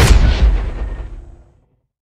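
A loud, sudden boom hit that ends the intro music sting, its echo dying away over about a second and a half into silence.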